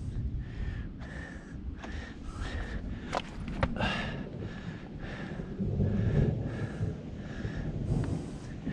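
Heavy, quick breathing of a climber hauling up a rock scramble, close to the microphone, with a couple of sharp scrapes or knocks about three seconds in.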